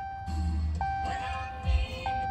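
Ram 1500 dashboard warning chime sounding again and again, a single held tone restarting about every second and a quarter: the door-open warning while the driver's door stands open with the ignition on.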